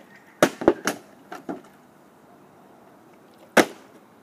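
Several sharp knocks in the first second and a half, then one loud sharp thud about three and a half seconds in, a plastic water bottle landing on the ground after being flipped.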